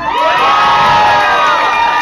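Audience cheering and whooping right after a live rock song ends, many voices shouting over one another.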